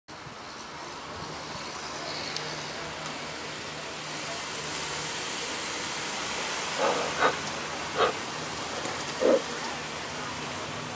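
Street traffic: cars passing close by, a steady rush of road and engine noise. Near the end come four short, loud calls in quick succession.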